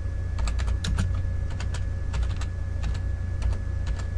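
Computer keyboard being typed on: an irregular run of key clicks, thickest in the first half and a few more near the end, over a steady low electrical hum.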